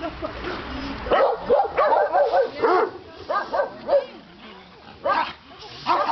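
Dogs barking and yipping at a kennel fence: a quick run of short barks starting about a second in, then a few single yips.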